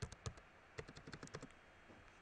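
Faint keystrokes on a computer keyboard, typing hyphens and spaces: a few taps at first, then a quicker run of about ten taps in the middle.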